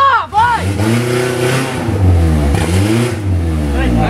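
Off-road buggy's engine revved hard twice, its pitch climbing, dipping and climbing again, as it strains under load to climb out of a muddy rut while being hauled on a tow rope.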